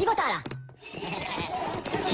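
Cartoon Minion voices: a high cry that falls in pitch at the start, a short knock about half a second in, then many high voices babbling and crying out at once as the stack of Minions wobbles.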